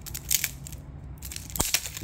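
Cellophane shrink-wrap being torn and peeled off a deck of cards: a crinkling crackle, with a few sharp snaps about a third of a second in and again near the end.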